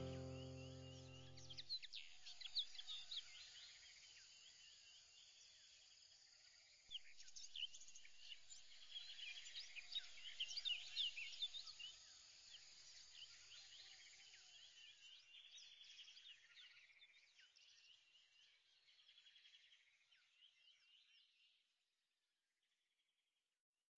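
Background music dies away in the first two seconds, leaving faint, busy bird chirping and twittering. It gradually fades out to silence just before the end.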